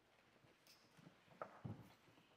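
Near silence: hall room tone with a few faint knocks and shuffles, the clearest ones a little after the middle.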